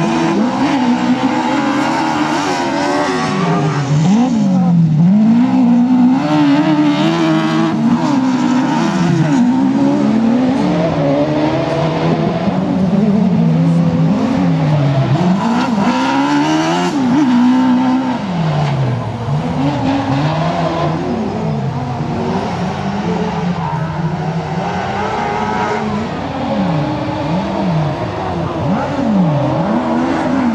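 Autocross racing buggy engine at full race pace on a dirt track, its revs climbing and dropping back again and again as it drives through corners.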